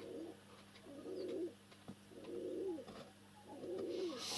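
A pigeon cooing faintly: four low coos, each about half a second long and dropping at the end, roughly a second apart.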